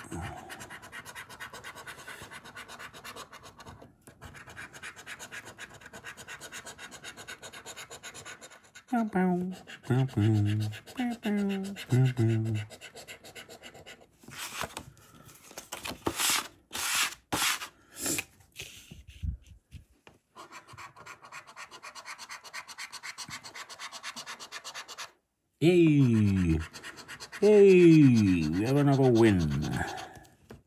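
A coin scraping the latex off a paper scratchcard in quick, repeated strokes. A few sharper rustles come about halfway through as the card is moved on the table.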